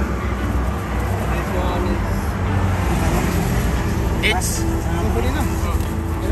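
Steady rumble of road traffic with voices talking in the background; a short spoken word comes about four seconds in.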